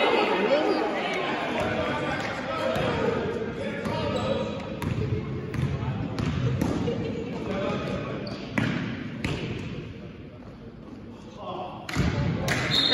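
A basketball bouncing on a gym floor, a handful of irregular sharp bounces, over a steady background of players' and spectators' voices echoing in a large gym.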